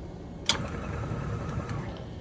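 DTF powder shaker machine running with a steady mechanical hum, and one sharp click about half a second in, followed by a couple of faint ticks.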